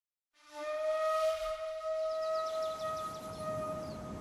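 A single long held note on a flute-like wind instrument, starting about half a second in, holding one steady pitch and fading near the end.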